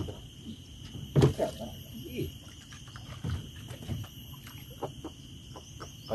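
A steady high-pitched insect drone with a single sharp knock about a second in, followed by a few brief low voice sounds.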